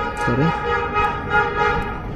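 A horn sounding one long steady note for nearly two seconds, fading near the end, with a brief spoken syllable over its start.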